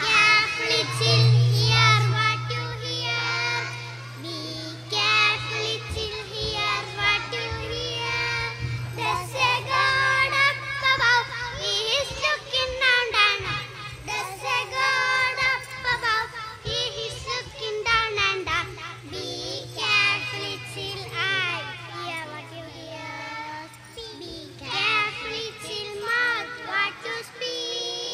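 Young girls singing an action song together, amplified through stage microphones, over a steady low hum.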